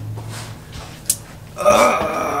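A black leather office chair creaking loudly as a man sits down in it, a short rasping creak near the end, after a single faint click about a second in.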